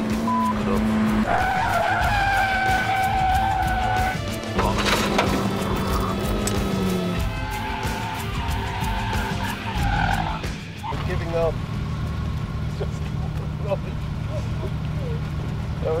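Kia Cee'd hatchback driven hard round a test track: its engine runs steadily at speed, the note stepping down a couple of times, and its tyres squeal for a few seconds near the start as it corners.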